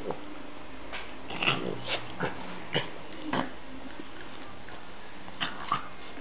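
A Boston terrier and an American Hairless terrier play-fighting, making short dog noises in quick succession. The noises come several in a row early on, then two more near the end.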